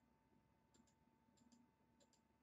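Near silence broken by a few faint computer mouse clicks, coming in quick pairs.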